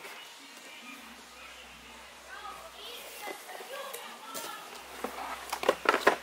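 A cardboard box and the chainsaw inside it being handled: low rustling, then a cluster of sharp knocks and clatters near the end as the chainsaw is lifted out of the box. Faint voices can be heard in the background.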